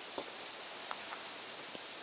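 Steady hiss with a few faint, light taps and clicks, from someone walking and handling the camera inside the RV.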